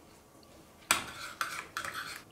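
A metal spoon stirring a liquid marinade in a ceramic bowl, knocking and scraping against the bowl: a sharp clink about a second in, then a few quicker scrapes.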